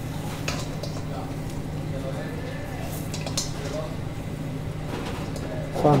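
Cooked lamb chops being slid off a metal tandoor skewer into a stainless steel bowl: a few light clinks and scrapes of metal on metal, over a steady low kitchen hum.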